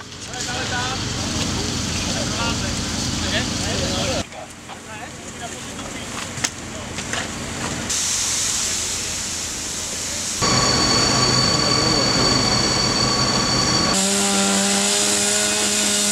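Firefighting at a burnt-out building: hissing noise of water spray and steam off the smouldering remains, heard in several abruptly cut segments. Near the end a steady engine hum with a clear low tone comes in.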